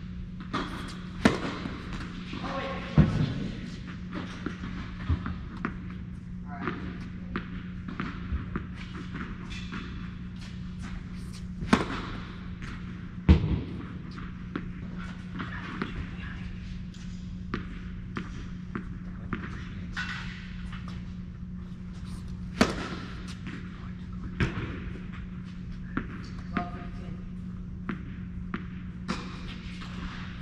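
Tennis balls being served and bounced on an indoor hard court: sharp racquet pops and ball thuds at irregular intervals, several seconds apart, over a steady low hum in a large reverberant hall.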